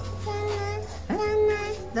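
A young child's voice in two drawn-out, sing-song calls, each held on a steady pitch, the second one longer.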